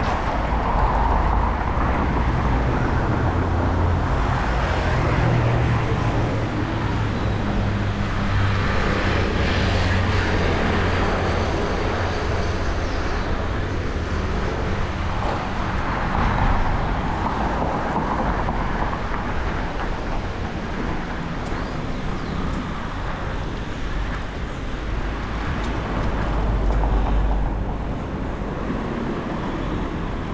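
Street traffic and road noise heard from a moving bicycle, steady throughout, under a low rumble of wind on the microphone.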